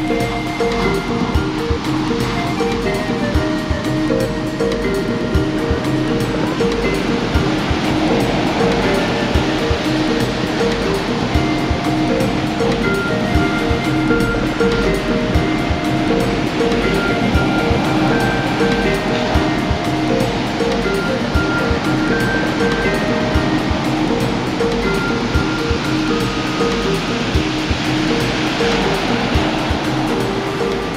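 Soft instrumental new age music with slow, held notes over the continuous wash of ocean surf breaking on a beach. The surf swells louder about every ten seconds as waves come in.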